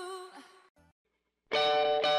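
Music changing tracks: the tail of one Christmas song fades out, a second of silence follows, and the next song starts about one and a half seconds in with plucked guitar notes.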